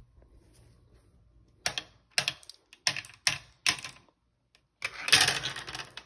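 Glass marbles on a plastic marble run: a series of short sharp clacks, then from about five seconds in a continuous dense rattle as the marbles roll and tumble down the plastic track at the start of a race.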